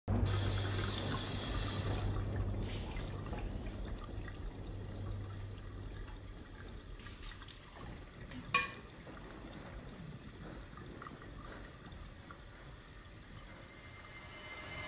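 Water running from a faucet into a sink. It is loudest at first and fades gradually, with a low steady hum beneath it for the first few seconds. A single sharp click comes about eight and a half seconds in.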